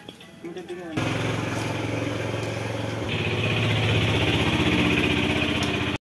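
A small engine running steadily with a fast, even pulse. It starts abruptly about a second in, gets a little louder about three seconds in, and cuts off sharply at the end.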